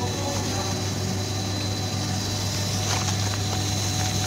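Corn tortilla chip production machinery running steadily: a roller sheeter-cutter and conveyor give a continuous low motor hum with a thin high whine and a few faint ticks.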